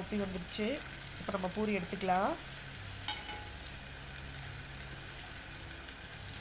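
A poori deep-frying in hot oil, a steady sizzle as a perforated skimmer is worked against it, with one brief click about three seconds in. A voice sounds over the first two seconds.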